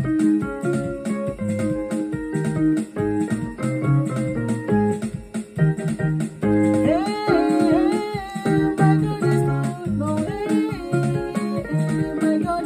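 Portable electronic keyboard playing an upbeat praise tune, with chords over a moving bass line. A man's voice comes in singing along about halfway through.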